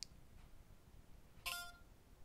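Light click at the start, then about a second and a half in a short electronic chime from the Amazfit Verge smartwatch's speaker: Alexa's tone as it opens and starts listening.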